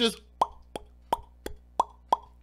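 A run of about six short, hollow pops, roughly three a second, each sharp at the start with a brief ringing tone.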